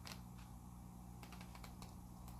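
Pages of a small paperback guidebook being thumbed through: faint papery ticks, one at the start, then a quick run of them past the middle, over a low steady hum.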